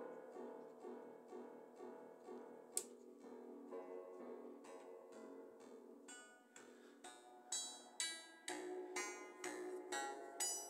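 Modular synthesizer playing short percussive oscillator notes through an Intellijel Springray spring reverb set to its medium spring tank, a throaty reverb. A single sharp click sounds about three seconds in, and from about seven seconds in the notes turn brighter and sharper, about two a second.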